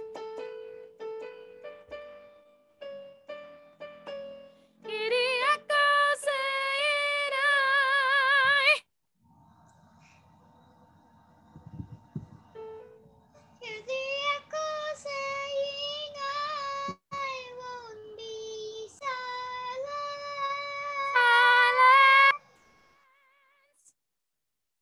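Singing on long held notes with vibrato, with no clear words, in two phrases separated by a pause of a few seconds, heard through a video call. It opens with a few short notes.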